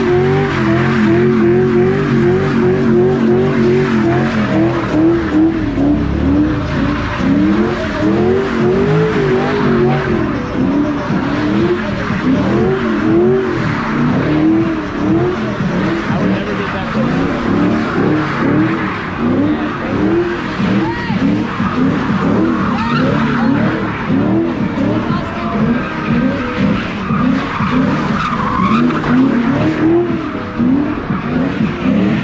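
Ford Mustang engine revving hard in a burnout, held near the top of its rev range for a few seconds, then revs rising and falling over and over, roughly once or twice a second, as the car spins donuts. Its rear tyres squeal and skid throughout.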